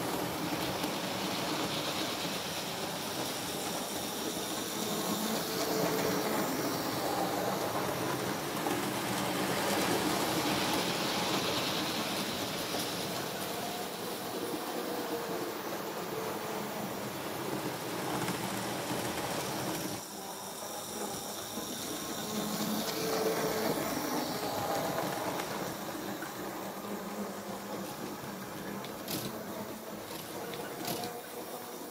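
Model railway goods train running round the layout, its wagon wheels rolling on the track in a continuous rattle that grows louder and fainter as the train circles, with a couple of sharp clicks near the end.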